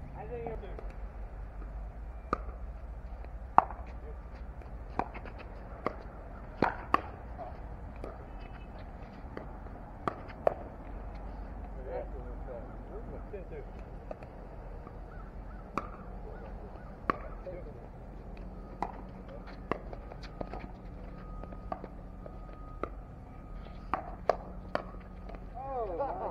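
Sharp pops of pickleball paddles hitting a plastic ball, spaced irregularly a second or two apart, with several quick hits close together near the end.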